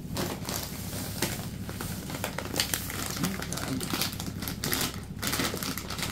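Crinkly snack bag being picked up and handled, a steady run of irregular crackles.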